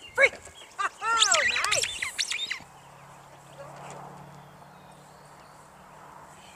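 A squeaky dog toy squeezed over and over as a lure, a fast run of rising-and-falling squeaks lasting about two and a half seconds. A faint steady low hum follows.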